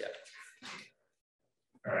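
Men's speech in a small room: a short 'yeah' and a brief vocal sound in the first second, then dead silence, then 'all right' at the very end.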